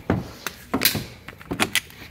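Spring-loaded jumper cable clamps being pulled off golf cart battery terminals: several sharp metallic clacks and knocks spread over about two seconds.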